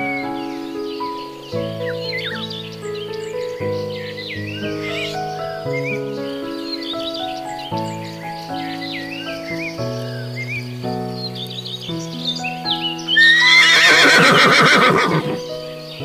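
A horse whinnies loudly for about two seconds near the end, a shaky neigh that falls away, over gentle background music of steady held notes with small high chirps.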